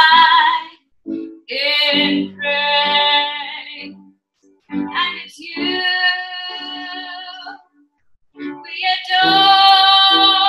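A woman singing a worship song and accompanying herself on an upright piano. The singing comes in held phrases broken by short breaths about a second in, near the middle, and about eight seconds in.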